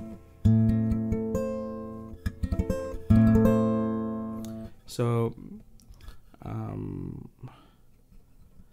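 Acoustic guitar strumming an A minor chord in a high position on the neck, twice, each chord ringing out and fading over about two seconds.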